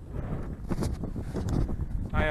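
Wind buffeting a handheld camera's microphone in uneven gusts, a low rushing noise.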